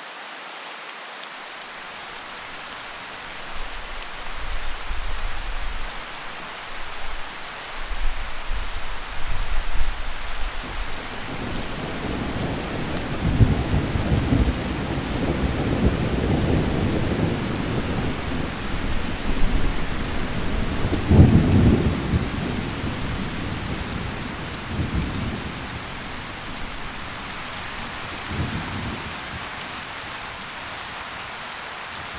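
Thunderstorm: steady rain with thunder rumbling in a few seconds in, building into long rolling peals through the middle, loudest about two-thirds of the way through, then fading to smaller rumbles near the end.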